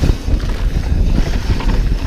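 Wind buffeting the microphone, with the rumble of mountain bike tyres on a dirt trail during a fast ride, and a short laugh right at the start.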